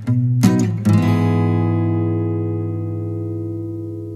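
Background music on guitar: a few strums in the first second, then a last chord rings on and slowly fades away.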